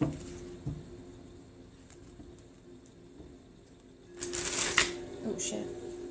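A deck of tarot cards handled and shuffled by hand, with small clicks and rustles. About four seconds in comes a brief, louder flurry of cards, as the deck is riffled or spread out onto the table.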